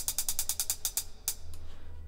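Software drum kit's closed hi-hat ticking in a fast, even run of about ten hits a second, each sixteenth note sounding as it is brushed into the piano roll. The run stops a little over a second in.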